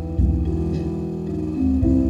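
Plucked guitar music played back through a hard disk drive turned into a speaker: the drive's voice-coil head actuator drives a plastic speaker cone fixed to the head arm, picked up by a microphone close to the cone. The cone is there to bring out the low frequencies, and the sound is definitely better for it.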